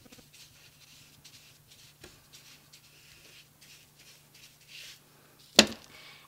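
A paintbrush stroking citrus solvent onto the back of a laser-printed paper image lying on cloth: faint, soft swishes, two or three a second. A single sharp knock near the end is the loudest sound.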